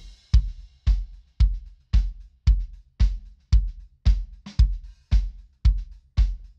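Recorded acoustic drum kit playing back with the bass guitar muted: a kick drum on every beat, about two hits a second, deep and prominent, with snare and cymbals over it.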